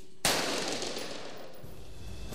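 A single gunshot about a quarter second in, sharp and loud, with a tail that dies away over about a second.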